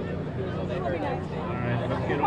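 Crowd of waiting fans chattering: many overlapping voices with no single speaker standing out, over a steady low hum.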